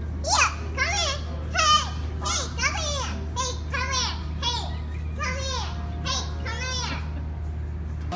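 A young child squealing over and over, about two short high-pitched cries a second, until near the end, over a steady low hum.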